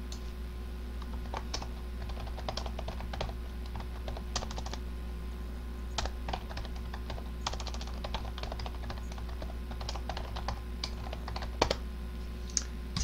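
Typing on a computer keyboard: irregular runs of quick key clicks, over a steady low electrical hum.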